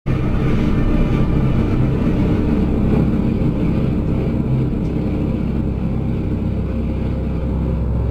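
A loud, steady low rumble with a dense, churning texture that starts suddenly out of silence.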